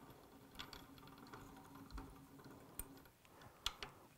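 Near silence with a few faint, scattered small clicks and ticks as fly-tying thread is wrapped from a bobbin over lead wire on a hook held in a vise.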